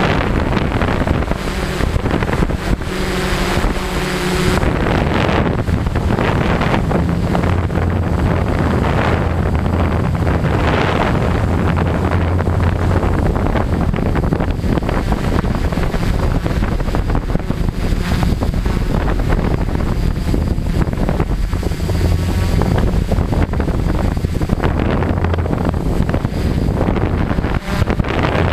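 A 450-size quadcopter's brushless motors and propellers running in flight, heard from the camera it carries, with wind buffeting the microphone. The hum shifts in pitch and strength as the throttle changes.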